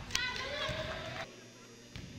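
A sharp knock, then a high-pitched voice shouting for about a second before it cuts off, over gym background noise.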